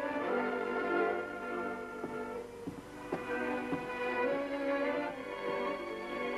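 Orchestral film score: bowed strings play a melody in long held notes over sustained chords.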